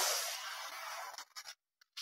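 A steady hissing rush of noise that fades, breaks up about a second in, and cuts to silence shortly before the end.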